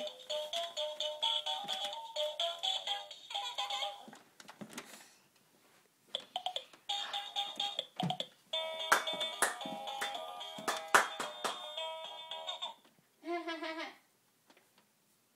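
Ride-on bouncing pony toy playing its electronic tune through a small speaker, in several runs of notes that stop and start again, with clicks and knocks from the toy being rocked.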